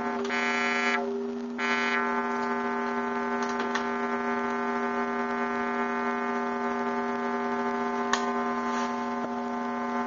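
Square-wave synthesizer tone played through a four-pole vactrol lowpass voltage-controlled filter: a steady, buzzy pitched note. It is brighter for the first second, dips briefly, then settles into a steady, somewhat mellower tone with the highs filtered off.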